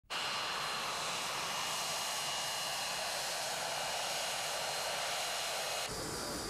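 Aircraft turbine engines running with a steady rushing noise and a high whine.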